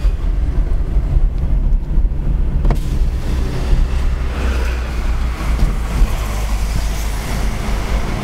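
Car driving, heard from inside the cabin: a steady low rumble of engine and tyres. A rushing hiss of wind and road noise swells in from about three seconds in, and there is a single click shortly before that.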